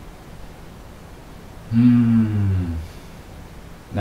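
A man humming one low note for about a second, its pitch sagging slightly at the end, over a faint steady hiss.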